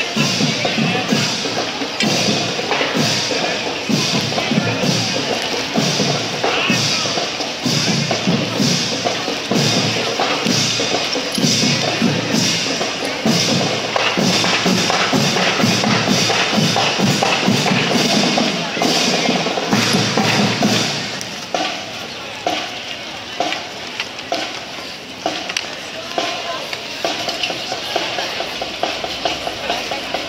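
Marching band percussion section playing a steady parade beat, with voices of the crowd mixed in. The drumming drops noticeably in level about two-thirds of the way through.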